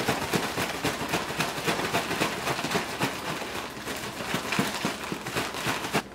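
Zip-top plastic bag being shaken, with shrimp tumbling in dry fish-fry coating inside: a continuous rapid crackling rustle of the plastic and the breading as the shrimp are coated.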